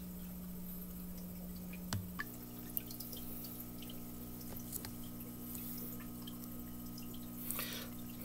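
Faint steady hum of running aquarium equipment with small drips and bubble pops from the aerated water. The hum changes pitch about two seconds in.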